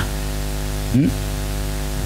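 Steady electrical hum and hiss from the live sound system, with a brief voice sound about a second in.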